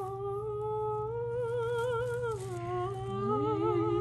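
Voices humming a long, drawn-out note with vibrato. The pitch steps down a little past halfway, and a second, lower voice slides upward to join it near the end.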